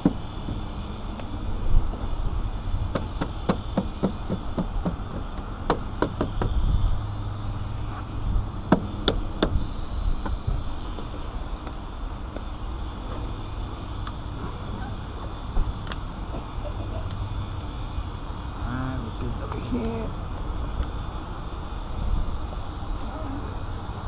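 Auto-glass urethane cutting blade being struck and worked along the edge of the glass: groups of sharp knocks and clicks, bunched in the first ten seconds and scattered after, over a steady low outdoor rumble.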